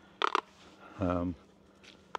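Speech only: a short voiced hesitation sound, like an 'um', about a second in, after a couple of quick clicks; otherwise only faint background hiss and hum.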